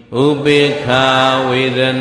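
A Buddhist monk's male voice chanting Pali in a steady intoned monotone, the notes held long, with a brief break just under a second in.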